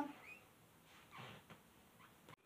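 Near silence: room tone, with one soft breath about a second in.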